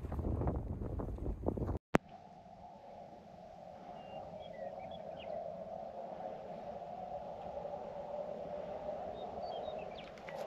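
Wind buffeting the microphone for the first couple of seconds, cut off by a sharp click. After it comes a steady, even hum with a few faint, short high chirps.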